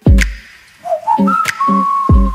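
Beat-driven instrumental background music: deep, booming kick drums with a whistle-like lead melody that slides up and then holds one long note in the second half.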